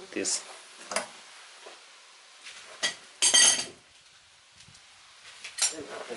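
Metal clinks from a long steel bar and socket being taken off an engine bolt and handled, with a louder ringing metallic clang about three seconds in and another clink near the end.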